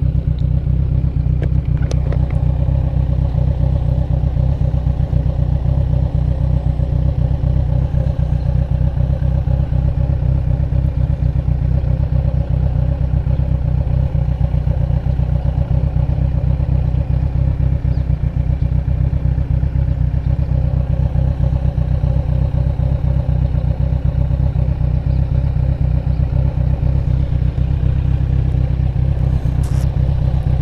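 Motorcycle engine idling steadily while stopped, a low, even drone.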